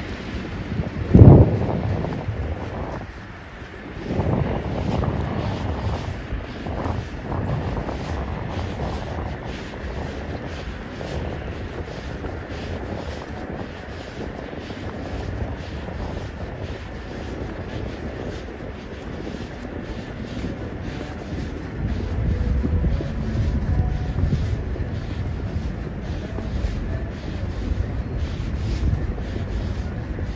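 Footsteps on a snow-covered sidewalk at an even walking pace, a little over one step a second, under wind rumbling on the microphone that grows stronger near the end. A single sharp thump about a second in.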